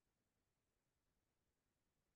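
Near silence: a faint, even noise floor with no distinct sound.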